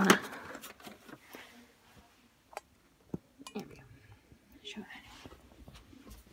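Scattered small clicks and knocks of hard plastic as a Calico Critters toy cottage is handled and a stuck piece is worked to pop it out of its display packaging.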